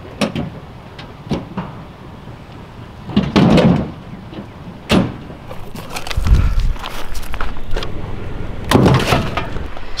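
A series of sharp wooden knocks and thumps as pieces of firewood are dropped into the bed of a pickup truck, the loudest about three and a half seconds in. A low rumble follows about six seconds in.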